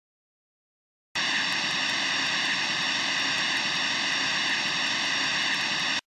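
Film projector running: a steady whirring hum with a fast, even ticking. It starts about a second in and cuts off suddenly.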